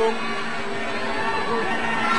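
Stadium crowd noise from a football match broadcast: a steady din with a held low hum underneath and no clear individual sounds.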